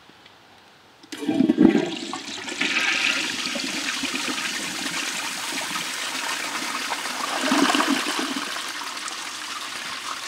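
1927 Standard Devoro flushometer toilet flushing: water rushes in suddenly about a second in and then runs steadily through the bowl, swelling briefly near the end. It is a pretty weak flush, with the valve only about a quarter turn open.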